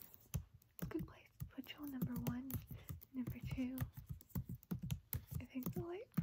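A woman talking quietly, with clicks of laptop keys being typed on.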